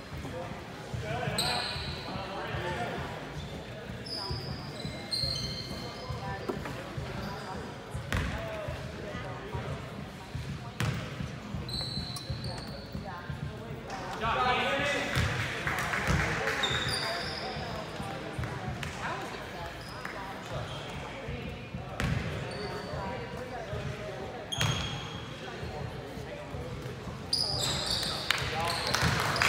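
A basketball bouncing on a hardwood gym floor, a series of single thuds, under the talk of players and spectators.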